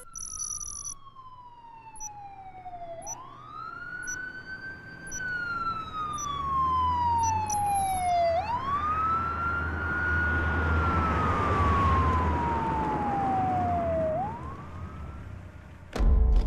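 Police siren wailing: each cycle is a quick rise in pitch followed by a slow fall over about five seconds, three times, with a low vehicle rumble growing louder from about the middle. A brief high beeping comes at the very start.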